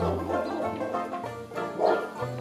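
Banjo background music, with Shetland sheepdog puppies giving a few short barks at the start and again near the end.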